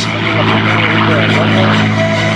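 Red Tail P-51C Mustang's Packard-built Merlin V-12 engine roaring steadily as the fighter flies past overhead.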